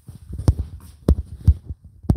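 Three dull, low thumps about half a second apart, with smaller knocks between them.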